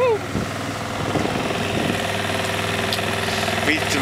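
A small sailboat's engine running steadily as the boat motors along in a flat calm with no wind to sail.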